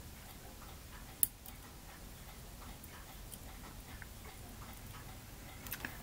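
Faint room tone with a few light ticks and one sharp click about a second in, from a small metal spring clamp being worked off a tiny photo-etched part held in tweezers.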